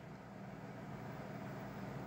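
Faint steady room tone: a low, even hiss with a light hum underneath.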